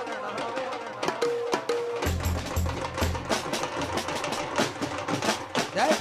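Live folk percussion: a dhol and a small stick-beaten drum played in a fast, dense rhythm of strokes, with a deeper bass beat coming in about two seconds in.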